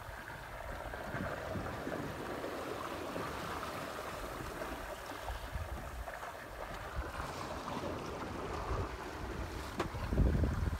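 Water rushing and splashing past the hull and through the wake of a Sea Pearl 21 sailboat under sail in choppy seas, a steady wash of noise with wind buffeting the microphone.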